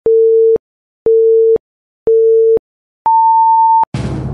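Film-leader countdown beeps: three short steady tones a second apart, then a longer tone an octave higher.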